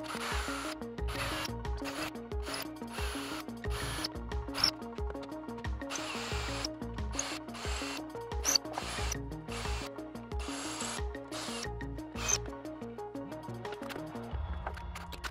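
Repeated short bursts of a cordless drill boring into a wooden guitar neck, drilling out holes at the fret-marker dots to take LEDs. Background music with a repeating melodic pattern and a steady beat runs underneath.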